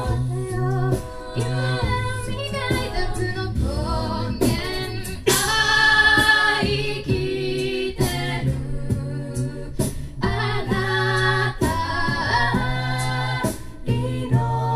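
A mixed-voice a cappella group singing live into microphones: a steady low bass line underneath, layered harmonies above, and short sharp percussive vocal hits. The singing swells loudest about five seconds in, with a bright high sustained note.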